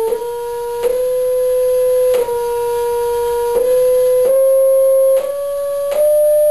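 Steady test tone from the two-inch speaker at the end of a propane-fed Rubens tube, stepped to a new pitch about six times, mostly rising, with a short click at each change.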